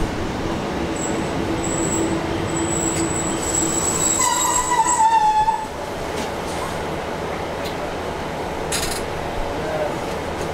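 Diesel multiple-unit passenger train heard from inside its door vestibule as it slows into a station: steady running noise with a low hum and a thin high whine, then a wavering squeal from the wheels about four seconds in. The squeal stops and the noise drops a little past halfway as the train comes to a halt, leaving a steady rumble.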